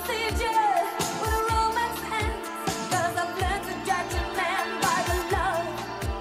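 1980s pop song with a wavering female vocal line over a steady beat of electronic drum hits, about two a second.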